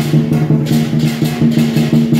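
Dragon-dance percussion band playing a fast, driving rhythm: drum beats with cymbals clashing in time several times a second.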